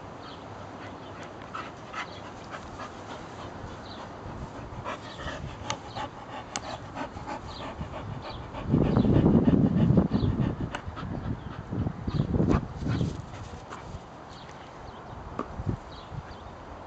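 A bull terrier panting hard close up after bringing back its toy, loudest for a couple of seconds about nine seconds in and again around twelve seconds.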